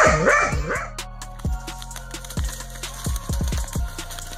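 A dachshund barking, a quick run of barks in the first second, over background music with a steady beat that carries on after the barking stops.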